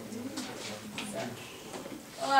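Faint, indistinct murmuring voices over a steady low hum.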